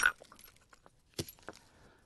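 Hard-hammer percussion: a hammerstone cobble strikes the edge of a stone core once with a sharp crack and knocks off a large flake. Faint small clicks of chips and stone follow, with a lighter click a little over a second in.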